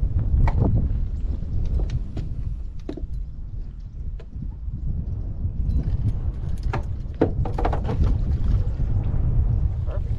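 Wind buffeting the microphone, a steady low rumble, with scattered light clicks and knocks from tackle handling on the boat.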